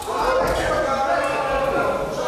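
Kickboxing strikes thudding against the body or gloves, with a sharp hit about half a second in. Shouting from the corners and spectators runs over it, echoing in a large hall.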